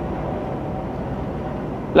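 Steady road noise of a car driving along a motorway, heard from the moving vehicle.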